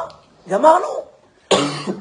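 A single short cough about one and a half seconds in, sudden and loud, between words of a man's speech.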